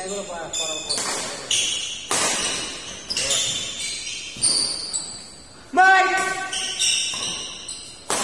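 Badminton singles rally in an indoor hall: rackets strike the shuttlecock in sharp hits about once a second, between high-pitched squeaks. Near six seconds in comes the loudest moment, a brief shout rising in pitch.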